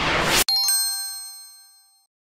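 Ice-magic sound effect: a rising whoosh that cuts off sharply about half a second in. It is followed by a bright sparkling chime of several ringing tones that fades away, marking the ice gleaming.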